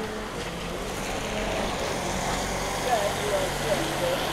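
Street ambience after rain: car tyres hissing on the wet road, growing slightly louder as a car approaches, with faint chatter of people walking by.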